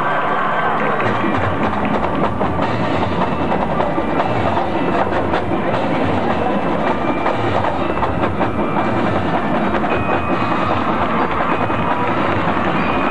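High school marching band playing, percussion to the fore: bass drums sound a regular low beat under sharp snare and stick strokes.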